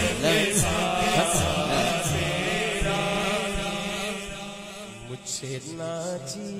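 Unaccompanied naat chanting: a drawn-out devotional vocal melody that settles into a long held note about halfway through and slowly fades.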